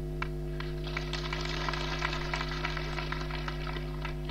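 Crowd applauding: a dense patter of many hand claps that fills in about half a second in and holds steady, over a steady low electrical hum from the public-address system.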